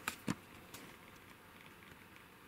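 Two sharp clicks close together near the start, the second louder, then faint steady room noise.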